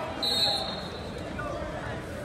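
Crowd chatter echoing in a gymnasium, with one brief high-pitched squeak, about half a second long, a quarter second in.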